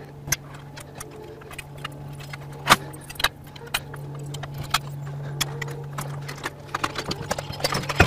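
Scattered metallic clicks and clanks from the ARED resistance machine's arms and fittings being handled and reset, with one sharper knock about three seconds in and a quick run of clinks near the end. Underneath is the steady low hum of the space station's cabin ventilation.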